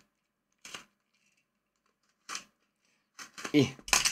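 A small printed card box being handled on a table: two short rustling scrapes about a second and a half apart. A brief spoken 'eh' follows near the end.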